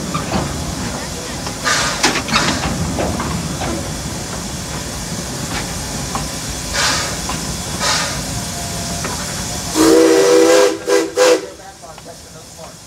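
Propane-fired steam locomotive running, with a steady hiss of steam and brief louder bursts every second or two. Near the end its steam whistle sounds a chord of several notes: one longer blast, then two short ones.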